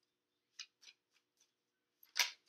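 Near silence broken by two faint clicks of tarot cards being handled, about half a second and about a second in.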